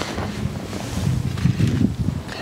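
Wind blowing across the microphone, a low, uneven rumble that swells and falls.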